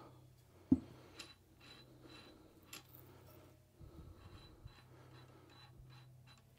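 Faint handling sounds of the RotoBoss Talon rotary's metal chuck jaws being opened and adjusted by hand: one sharp click a little under a second in, then scattered soft clicks and taps, over a low steady hum.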